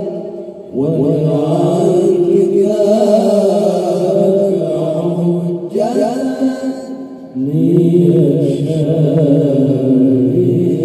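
A group of men chanting sholawat, an Islamic devotional song, into microphones without instruments, holding long wavering notes. New phrases begin about a second in and again near six seconds in.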